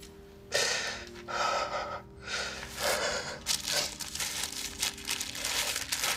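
A man sobbing: gasping, breathy cries in uneven bursts, starting about half a second in, over soft sustained music.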